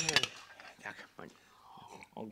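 Glasses clinked together in a toast: one sharp, ringing clink right at the start, followed by a few small clicks.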